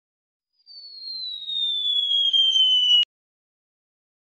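Electronic intro sound effect: a high, whistle-like tone gliding slowly downward and growing louder, with a fainter rising sweep underneath, cutting off suddenly about three seconds in.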